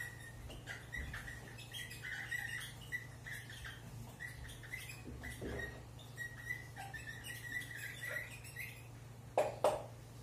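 Dry-erase marker squeaking against a whiteboard in many short, faint strokes as someone writes and draws, over a steady low hum.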